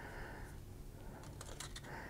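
Quiet room with faint handling sounds: hands turning a wooden rifle butt plate that holds a paper tag, with a few light clicks in the second half.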